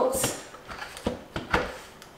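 The lid of a large canner being twisted and handled as it is tried open: a brief scrape, then three sharp clicks about a second in.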